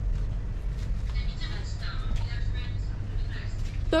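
Supermarket ambience: a steady low hum under faint, distant voices of other people talking.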